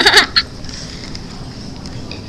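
A short burst of high-pitched laughter in the first half second, then low room noise.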